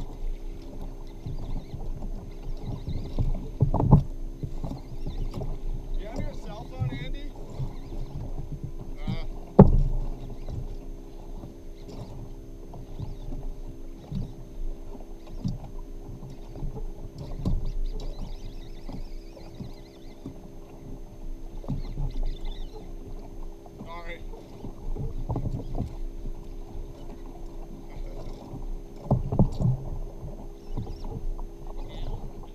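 Water slapping and rumbling against a plastic fishing kayak's hull while a fish is fought on rod and reel, with two sharp knocks on the hull, about four seconds in and a louder one near ten seconds, over a steady low hum.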